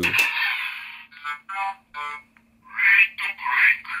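Fourze Driver toy belt playing its Limit Break sound effects through its small speaker. The "Limit Break" voice call falls in pitch and fades, then a run of short electronic tones and sound effects follows.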